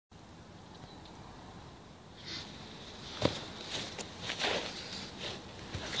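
Footsteps on grass, with rustling as a person comes up and kneels, and one sharp knock about three seconds in. A faint outdoor hiss runs underneath.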